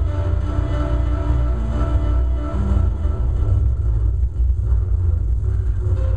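Loud live electronic music: a heavy, steady bass rumble with several long held tones over it that change pitch every second or so.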